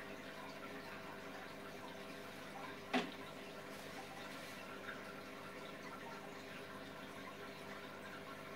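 Aquarium running: a steady low electrical hum with faint water movement, as from a tank's filter pump. One short sharp click about three seconds in.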